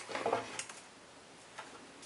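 Faint handling noises of a roll of glue dots being picked up and set down on a craft mat, with one light tick about one and a half seconds in.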